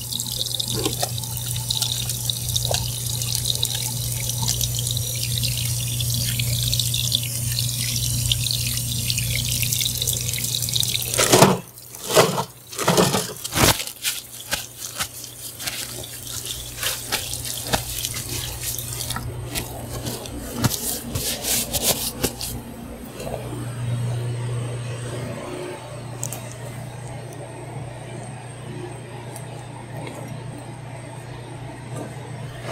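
Tap water running into a wall-mounted hand sink during handwashing, a steady rush that stops sharply about eleven seconds in. Paper towels are then pulled from a wall dispenser and crumpled and rubbed while the hands are dried, a loud flurry of tearing and rustling followed by several seconds of lighter crackling. A steady low hum runs underneath.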